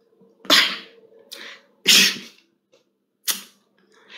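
A man's short, breathy huffs through mouth or nose, four of them. The first and third are the loudest. A faint steady hum runs underneath.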